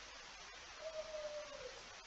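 Faint steady microphone hiss in a pause between words, with one faint thin tone, falling slightly and lasting about a second, in the middle.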